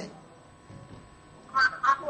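A short lull in the talk, then a person's voice starting about one and a half seconds in.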